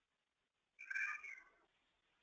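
A short, faint, high-pitched call or squeak, about a second in, lasting under a second and falling in pitch.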